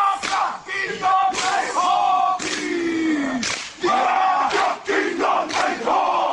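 A group of men performing a Māori haka: loud chanting and shouting in unison, in short phrases.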